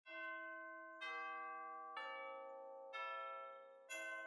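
Bell-like chimes: four struck notes about a second apart, each ringing on and fading, the last one lowest in pitch.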